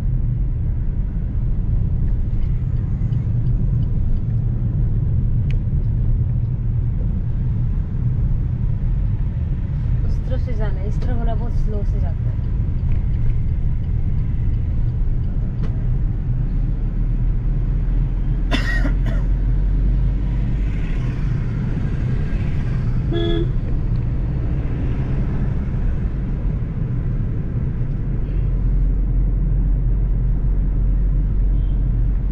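Steady low road and engine rumble inside the cabin of a Suzuki Ignis hatchback driving in town traffic. Short car-horn toots sound just past halfway and again about three-quarters through.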